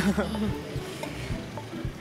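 Steady background hiss with a low hum underneath and a few faint, soft knocks.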